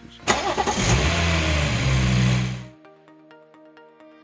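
BMW B58 3.0-litre turbocharged straight-six starting: it fires about a third of a second in and settles into a steady fast idle. The sound cuts off suddenly after about two and a half seconds, leaving background music.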